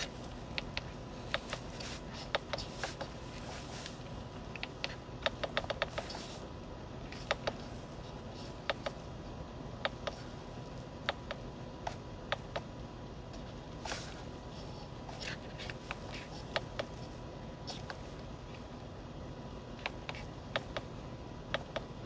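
Steering-wheel menu buttons of a 2022 Honda Passport TrailSport clicking as they are pressed, in single clicks and quick runs of several, scattered throughout over a faint steady hum.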